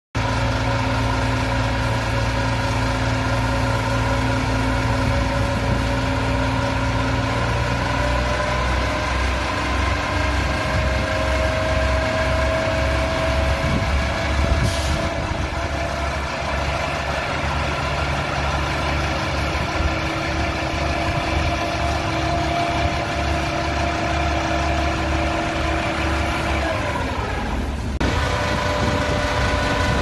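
Municipal tanker truck's diesel engine running steadily as it powers a hose spraying disinfectant, with an even hiss of the water jet underneath. A falling tone and a shift in the engine sound come near the end.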